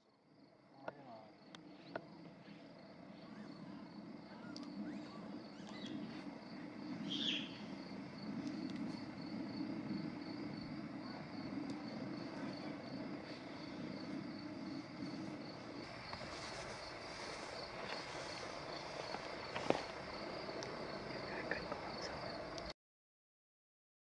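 Crickets chirping in a steady, evenly pulsed high trill over outdoor ambience, with a few faint clicks and knocks.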